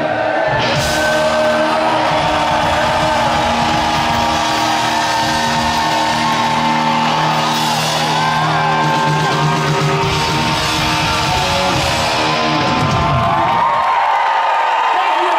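Live rock band with electric guitar and drums holding out the closing chords of a song, with crowd whoops rising over it. The low end of the band stops about a second before the end, leaving the crowd.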